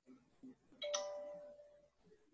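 A single bell-like chime sounds once, about a second in, with a clear pitched note that fades away within about a second.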